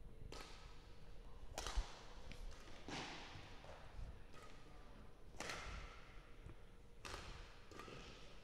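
Badminton rackets striking a shuttlecock in a rally, beginning with the serve: sharp, faint hits about every second and a half, each with a short echo from the hall.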